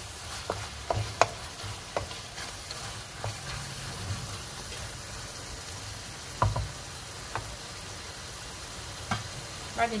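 Chicken pieces frying in sauce in a metal pan with a steady sizzle, while a wooden spoon stirs them and knocks against the pan a few times, the loudest knock about six and a half seconds in.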